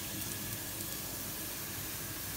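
Sliced onions frying in hot oil in a pot, a steady low sizzle.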